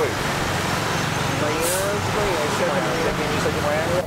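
Steady urban street noise of traffic, with faint voices of people talking in the distance.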